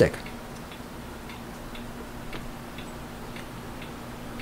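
Faint, short clicks scattered unevenly through a quiet room tone with a steady low electrical hum.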